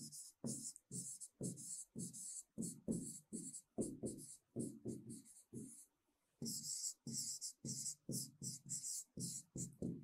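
Faint handwriting sound: a pen scratching out a line of words in short strokes, about three a second, with a brief break about six seconds in.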